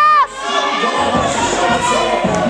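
Gym crowd shouting and cheering over loud background music, opening with a single high-pitched yell.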